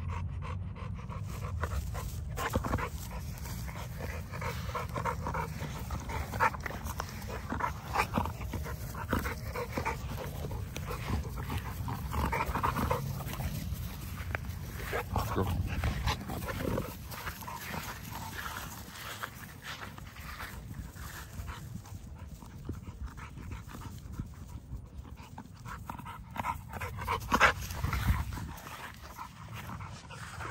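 XL American Bully dog panting with its tongue out.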